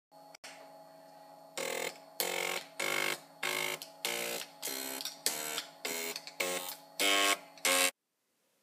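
Floppy disk drive's stepper motor buzzing out a tune. About a second and a half in it begins playing about a dozen short notes of changing pitch, one every half second or so.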